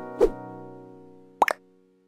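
Intro music sting: a held synthesizer chord fading away, with a short pop about a quarter second in and a quick double pop near the end, after which it cuts out.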